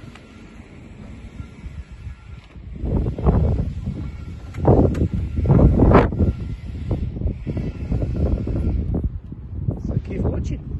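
Wind buffeting a handheld phone's microphone in irregular gusts, loudest about three seconds in and again around five to six seconds in.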